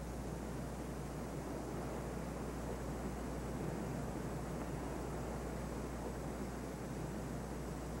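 Steady, unchanging background noise with a constant low hum, typical of an old film soundtrack's hiss and hum, with no distinct sounds standing out.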